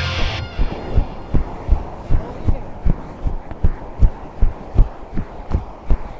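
Running footfalls on a pebble beach: a steady run of low thuds, nearly three a second, over the faint wash of surf.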